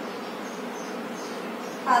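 A steady, even buzzing background noise, with no distinct strokes or events.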